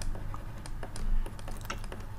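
Light, irregular clicks and taps of a stylus writing on a pen tablet, over a faint low hum.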